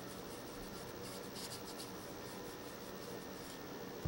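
Wet paintbrush stroking over water-soluble oil pastel on paper: faint, soft brushing strokes, thickest a little after a second in, spreading and blending the pastel with water.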